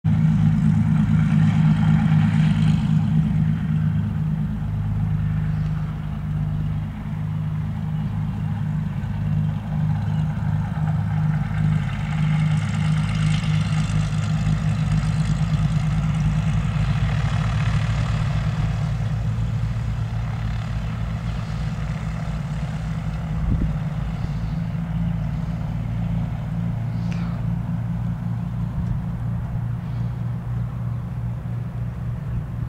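Twin turbocharged piston engines and propellers of a Cessna 404 Titan running at taxi power: a steady low drone, loudest in the first few seconds.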